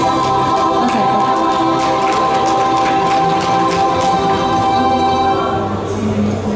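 Backing music playing the closing bars of a pop song, with long held chords and choir-like voices; it stops about five and a half seconds in.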